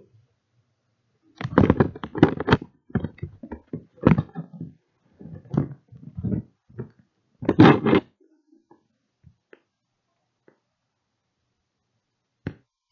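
Irregular clusters of loud clicks and thumps for about six seconds, then only a few faint ticks.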